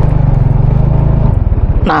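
Motorcycle engine running steadily under light throttle, then about a second and a half in the drone drops to a slower beat of separate firing pulses as the throttle closes.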